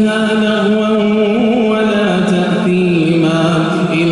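A male imam's melodic Quran recitation, chanted in long held notes that waver slightly and step down in pitch about two-thirds of the way through.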